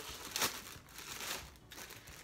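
Clear plastic packaging crinkling as it is handled and pulled open around a new bag. The loudest crinkle comes about half a second in, and the rustling dies down after that.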